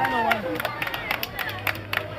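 Street crowd with voices and scattered hand claps over background music; a voice rises and falls near the start.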